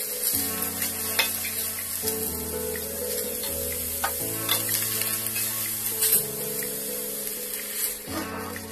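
Chopped vegetables sizzling as they sauté in a stainless steel pot, stirred with a metal spatula that clicks against the pot a few times. Soft background music with held chords plays along.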